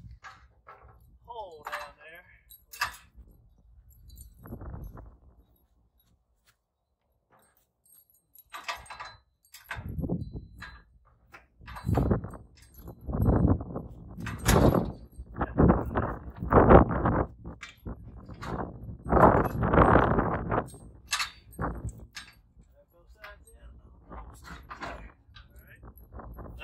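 Steel wheel-kit carriage being worked onto a Priefert squeeze chute's steel frame to line up the pin holes: a run of loud metal knocks, clanks and rattles, heaviest in the middle.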